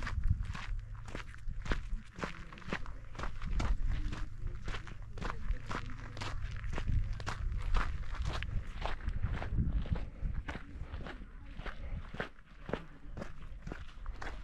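Footsteps on a sandy, gritty dirt trail at a steady walking pace, about two steps a second.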